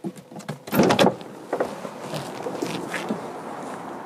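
A car door opening and shutting as someone climbs out, with the loudest clatter about a second in. A steady outdoor background noise follows, with a few small knocks.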